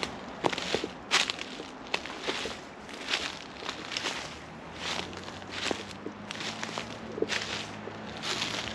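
Footsteps crunching through dry fallen leaves at a steady walking pace, one step about every three-quarters of a second.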